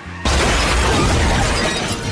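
An added crash sound effect with shattering glass, starting suddenly about a quarter second in and staying loud through the rest, marking the bumper cars colliding. Background music plays under it.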